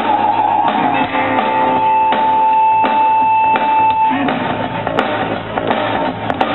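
A live rock band plays an instrumental break on electric guitars, bass and drums, with no singing. One long steady high note is held from just over a second in until about four seconds in.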